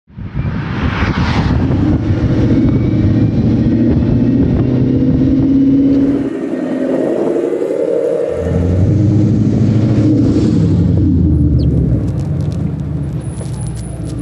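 Ford Mustang's engine and exhaust running with a deep rumble as the car drives. The lowest part of the sound drops away for about two seconds midway, then comes back.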